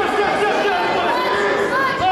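Several voices talking and calling out at once, overlapping, in a large echoing hall.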